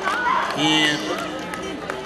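A man speaking into a handheld microphone, his voice amplified, in short phrases with brief pauses.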